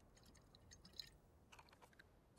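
Near silence with a few faint, short mouth clicks: a man swallowing as he drinks from a glass bottle of Coke.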